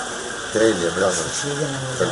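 Speech: a person talking close to the microphone, starting about half a second in.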